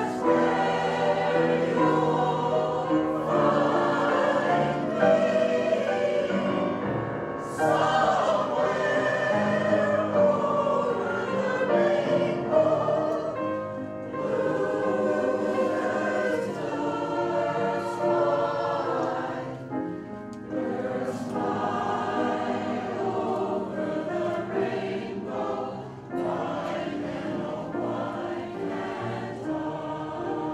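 A mixed choir of men and women singing together in harmony, with brief breaks between phrases every several seconds.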